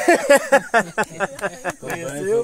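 A person laughing: a fast, even run of short 'ha' bursts, each dropping in pitch.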